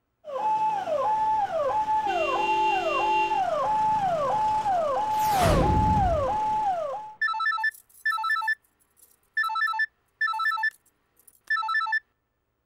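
A siren-like wail repeats, falling in pitch about every two-thirds of a second, with a whistle sweeping down into a low boom about five and a half seconds in. From about seven seconds a telephone rings in paired double rings: an incoming call.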